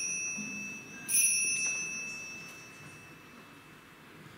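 Small altar bell ringing at the elevation of the consecrated host: a clear, high ring fading, then rung again about a second in and dying away over the next two seconds.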